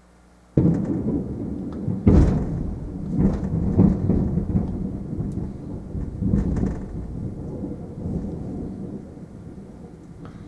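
A thunderclap: a sudden crack about half a second in, then rolling low rumbles that swell again a few times and slowly fade.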